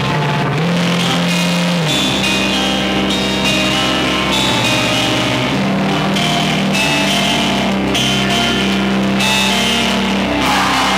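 Live band playing a slow song: electric guitar and bass guitar through amplifiers, holding sustained notes with a pitch bend in the first couple of seconds.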